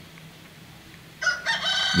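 A rooster crowing: a single held, pitched call that starts a little past halfway through, after a moment of low room sound.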